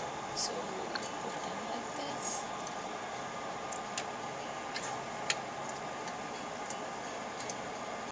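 Light clicks and ticks of small metal clamp parts being handled as a glass capillary is fitted into a micropipette puller, scattered over a steady background hiss, the sharpest click a little past five seconds in.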